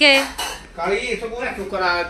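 Steel dishes and utensils clinking and clattering, with a person's voice over them.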